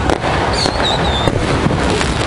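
Fireworks going off, with sharp cracks near the start and again after about a second, a wavering high whistle between them, and a steady low rumble underneath.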